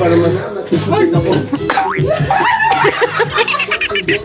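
A group of people laughing and talking loudly, with music playing underneath.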